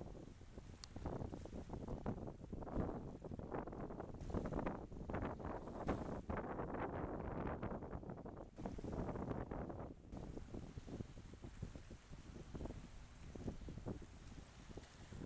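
Wind buffeting the microphone in uneven gusts, over small seawater waves lapping at the sand among a pier's iron legs.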